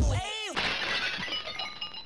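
Outro music cuts off, and about half a second in a sound effect of breaking glass follows: a sudden crash with tinkling, ringing shards that die away.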